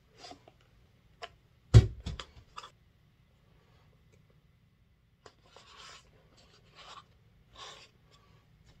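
Cardboard shipping box being opened by hand: a loud snap and a few clicks about two seconds in, a short quiet pause, then several brief scraping rubs of cardboard as the box is handled.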